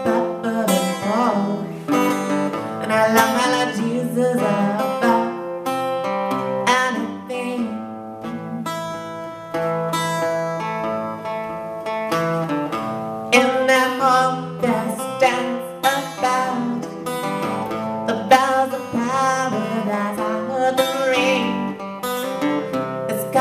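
Acoustic guitar and acoustic bass guitar playing the carol's tune together: a stream of plucked notes over a held low bass line, with no sung words.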